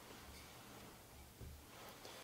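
Near silence: room tone, with a few faint soft bumps, the clearest about one and a half seconds in, as a chalice and paten are moved on a cloth-covered altar.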